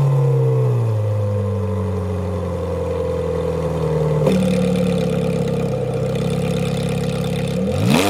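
The Ferrari 430 Scuderia Spider 16M's 4.3-litre V8, breathing through a Capristo muffler and catalytic converters, drops from a rev into a steady idle heard at the tailpipes. The idle shifts slightly about four seconds in, and a throttle blip starts to rise near the end.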